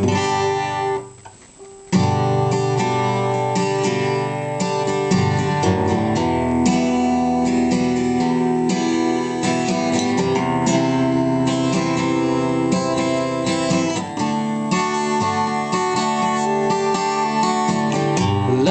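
Steel-string acoustic guitar strummed: one chord rings out at the start, then after a short pause a steady, rhythmic strummed chord pattern begins about two seconds in and runs on as the song's instrumental intro.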